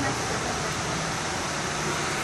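Steady rushing background noise with a low hum and a few faint, distant voices: the ambient sound of a busy aquarium hall.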